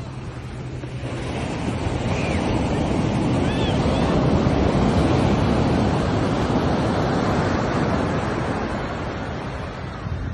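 Ocean surf: a wave breaking and washing up the sand, swelling to a peak about halfway through and then fading.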